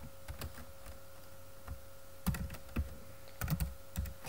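Typing on a computer keyboard: separate keystroke clicks, a few scattered ones at first, then coming quicker in the second half.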